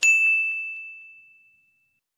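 Notification-bell ding sound effect: a single bright chime that rings and fades out over about a second and a half, marking a click on a bell icon.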